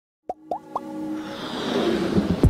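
Intro sound effect: three quick rising plops about a quarter second apart, then a swell of sustained music that builds toward the end.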